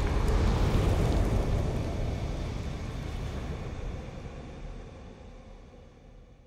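Logo outro sound effect: a deep rumbling noise that fades away steadily over several seconds.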